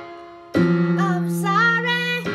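A girl singing over a piano backing track. A held note fades, a loud chord comes in about half a second in, and her voice enters about a second in, sliding up to a held note.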